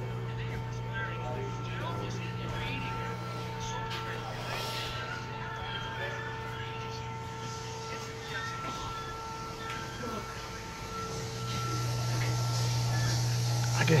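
Steady low machine hum with a few faint steady tones above it, under faint indistinct voices. The hum grows louder over the last few seconds.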